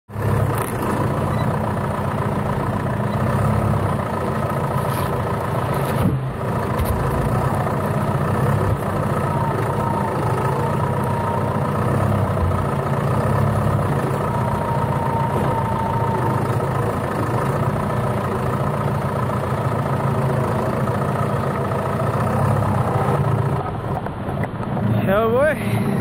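John Deere tractor's diesel engine running steadily, heard from the cab.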